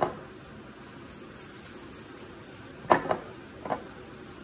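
A few light clinks of kitchenware as salt is taken from a glass jar: one at the start, two close together about three seconds in and another just before the end, over quiet room noise.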